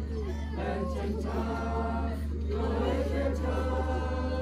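Congregation of mixed voices singing a hymn a cappella, with a steady low hum underneath.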